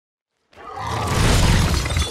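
Film sound effects of a crash: breaking, shattering debris over a deep rumble. It fades in from silence about half a second in and stays loud.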